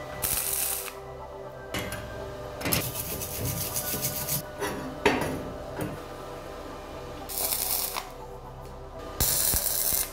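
MIG welder laying short tack welds on a steel-tube frame: three brief bursts of arc crackle, one at the start, one about seven seconds in and one in the last second. Metal parts knock and clatter in between.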